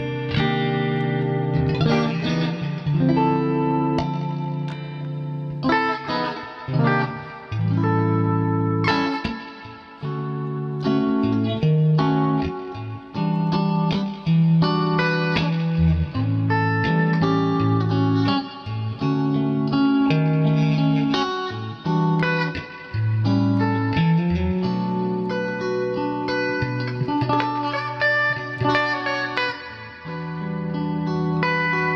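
Stratocaster-style solid-body electric guitar played through an amplifier: a run of sustained chords and picked single notes with a bright, chiming tone.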